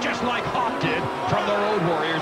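Men talking: television wrestling commentators calling the match.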